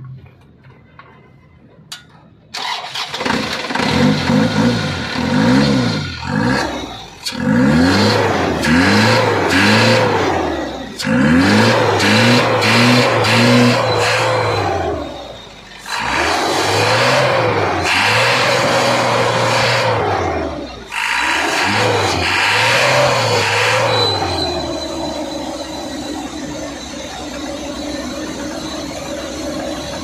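Isuzu NKR truck's four-cylinder diesel engine starting about two seconds in, then revved up and down in repeated bursts before settling to a steady idle near the end. It is being checked for a miss (misfire).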